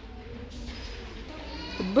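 Shop background: a steady low hum and murmur, with a faint drawn-out voice in the second half. A woman's close voice starts speaking at the very end.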